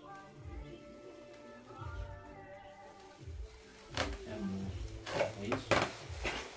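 Plastic roof-lining sheet crackling and rustling as it is cut and pulled open by hand with a knife, a few sharp crackles in the second half. Faint music plays in the first few seconds.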